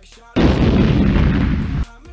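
Explosion sound effect for a logo animation: a loud, low-heavy blast of noise that starts suddenly about a third of a second in, holds for about a second and a half, and cuts off suddenly.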